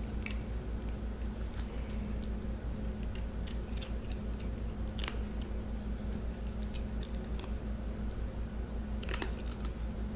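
Scattered small clicks and ticks over a steady low hum, with a sharper tick about five seconds in and a short cluster near the end. They come from a tabby cat nosing at a chrome desk call bell without ringing it.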